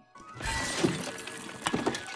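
Household items crashing and breaking in a film soundtrack: a sudden loud crash about half a second in, followed by a run of sharp knocks and clatters, over music.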